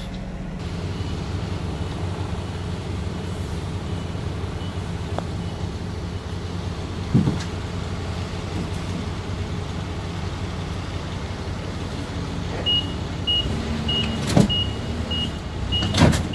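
Engine running steadily, with a couple of knocks as boxes of solar panels are handled, and near the end a forklift's reversing beeper starts, a high beep repeating about three times every two seconds.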